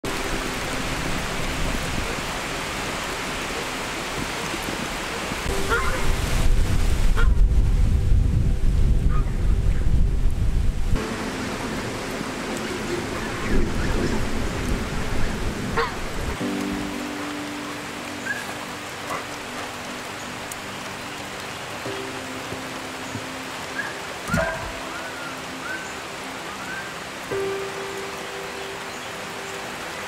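Steady rain falling, with a deep low rumble building about five seconds in and cutting off about eleven seconds in.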